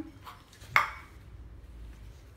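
A stainless steel dog bowl clinks once, sharply, about three-quarters of a second in, with a short metallic ring.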